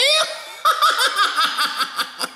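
A storyteller's high-pitched theatrical laugh, a quick run of short 'ha' pulses about six a second, starting about half a second in, voicing a character in a children's tale.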